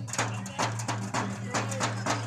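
Sharp, evenly spaced beats, about three a second, over a steady low hum, with voices mixed in.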